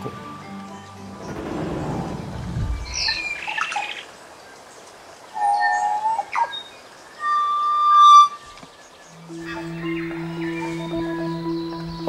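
North Island kōkako singing: a few long, pure, organ-like notes, the loudest and longest a held note about two-thirds of the way through, with a few short higher calls before it. A steady low music drone comes in near the end.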